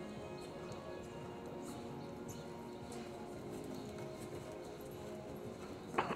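A dressage horse's hoofbeats on the arena's sand footing, heard under music with steady held notes.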